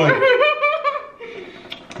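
A person laughing for about a second, then it dies away.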